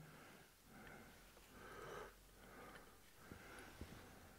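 Near silence: faint, slow breathing through the nose at about one breath a second, with two faint small clicks near the end.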